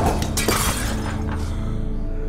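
Film-score music holding steady low tones under a crash of something shattering at the start and a second impact about half a second later, the high clatter dying away by about a second and a half in.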